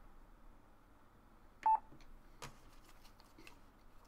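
A single short electronic beep from a Yaesu FT-817 transceiver about halfway through, its key beep as a control is worked to step the frequency up to 29 MHz. Faint clicks of knob handling and a low hiss run underneath.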